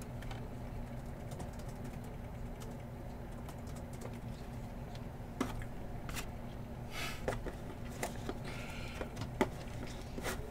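Steady low hum with, from about halfway, a few soft clicks and rustles of velvet drawstring card pouches being picked up and shifted around inside a cardboard box tray.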